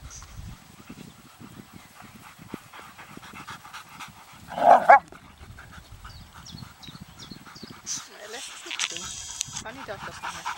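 Two dogs, a young Airedale terrier and a larger brown dog, playing: scuffling and panting, with one short, loud two-part bark about halfway through.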